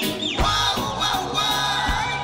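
Reggae band playing live through a concert hall PA, with drums and bass keeping a steady beat.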